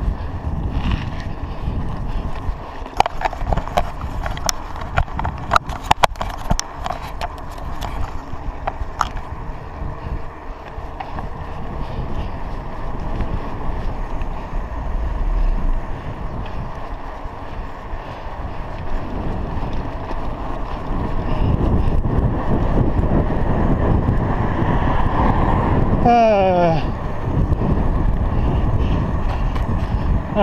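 Wind and road noise on a chest-mounted action camera while riding a bicycle on a paved road, with a run of sharp clicks and rattles in the first third. The noise grows louder about two-thirds of the way through, and a short voice-like call sounds near the end.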